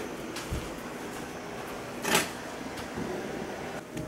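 Items being handled at an open dishwasher: a few light clicks and a soft knock, then a brief, louder scrape about two seconds in.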